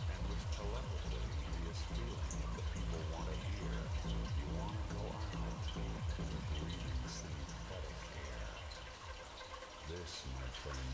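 Dry ice bubbling in warm water in a mug, a steady low gurgling that grows quieter near the end as the soap film caps the mug and swells into a bubble.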